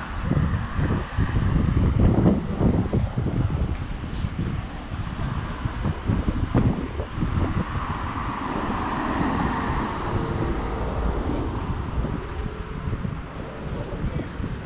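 Wind buffeting the microphone in gusts over street ambience, with a car driving past about two-thirds of the way in, its tyre noise swelling and fading.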